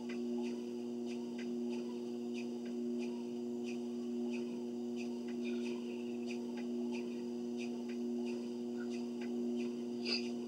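Motorised treadmill running with a steady hum, and footsteps striking the moving belt at a walking pace, about two steps a second.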